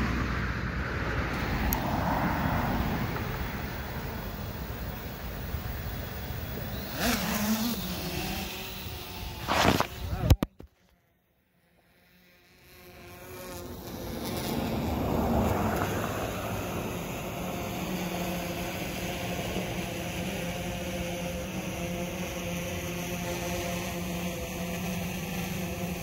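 Cars passing on the road, with one sharp knock about ten seconds in, then a short dropout. After that comes the steady multi-tone hum of a six-rotor drone's propellers as it hovers.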